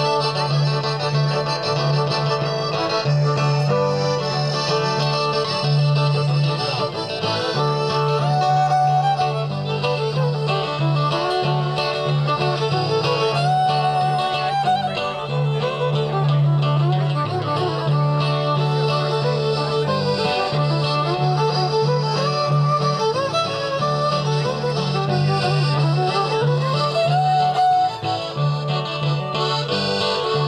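Live Cajun/zydeco band playing an instrumental break, with fiddle and accordion leading over electric bass, acoustic guitar and drums. The fiddle slides between notes, with a rising slide near the end.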